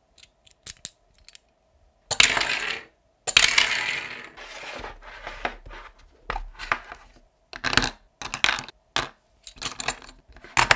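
Hard plastic toy pieces being handled: a few light clicks, then two longer spells of clattering and rattling about two and three seconds in, then a run of sharp plastic clicks and snaps as the figure, vehicle parts and plastic case are worked.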